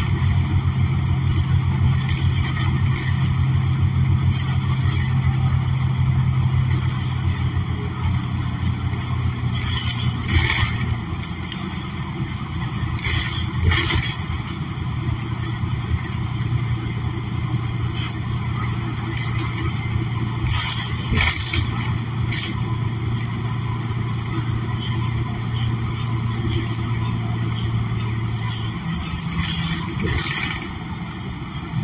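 Interior of a New Flyer XN40 city bus under way: its Cummins Westport L9N natural-gas engine and Allison automatic transmission give a steady low drone under road noise. The drone changes pitch about a third of the way in and settles again, with a few short clatters along the way.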